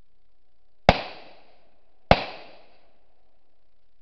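Two gunshots about a second apart, each trailing off in a short echo.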